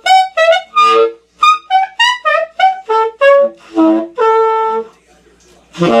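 Saxophone playing overtone exercises: a quick string of short notes jumping between pitches over a low B or B-flat fingering, with brief gaps between them. The playing stops about five seconds in.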